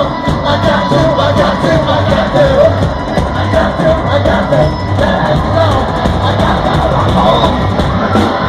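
Live rock band playing loud in a club, electric guitar and band driving along under a singer's vocals.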